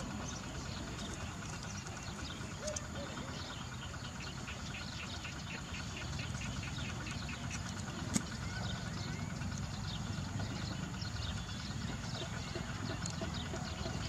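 Outdoor ambience: steady background noise with a run of quick, evenly spaced high chirps in the middle and a single sharp click about eight seconds in.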